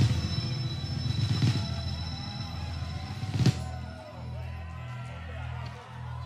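A live funk band of horns, electric guitar, bass, keys and drums holds a final chord to close a song, with drum and cymbal hits; the last and loudest hit comes about three and a half seconds in. The chord then dies down to pulsing low bass notes.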